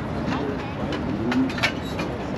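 A low cooing bird call a little past halfway through, over a murmur of voices, with a sharp click near the end.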